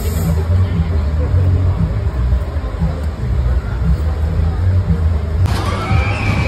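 Funfair ambience: crowd chatter over loud, bass-heavy music. Near the end the sound changes abruptly to a brighter, busier mix of voices.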